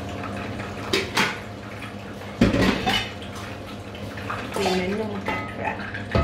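Kitchenware being handled at the stove: two light knocks about a second in, then a louder clatter a couple of seconds later, as the blender jug and its lid are put aside and a wooden spoon is taken to the pot.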